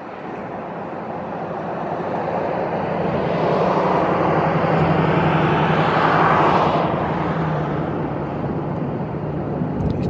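Engine noise of a passing vehicle, swelling over a few seconds to a peak and then fading, with a steady low hum underneath.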